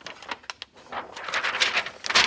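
Thin plastic carrier sheet crinkling as it is handled: a few sharp crackles at first, then denser crinkling from about a second in.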